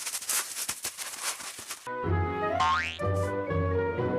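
Cartoon sound effect of a cat scratching fast and furiously in a litter box, a dense rapid scratching for about two seconds. It gives way to bouncy cartoon music with a quick rising whistle glide.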